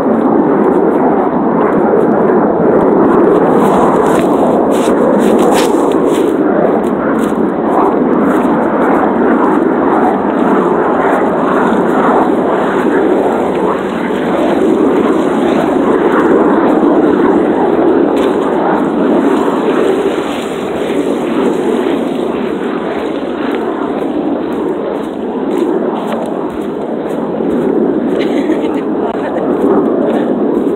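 Fighter jets flying over: a loud, continuous jet roar that swells and eases slowly, dropping somewhat in the second half and rising again near the end.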